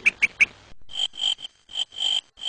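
Night-time chirping sound effect: short high chirps at one steady pitch, repeating about three times a second, after a few quick falling chirps at the start.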